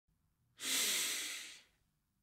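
A man taking one long, deep breath, an airy rush lasting about a second that fades away.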